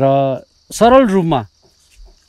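Steady high-pitched insect buzz, a crickets' chorus, under two drawn-out vocal sounds from a man's voice in the first half.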